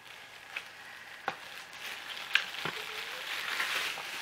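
Clear plastic bag crinkling and rustling as a tripod is slid out of it, getting louder in the second half, with a few light clicks and knocks from the tripod.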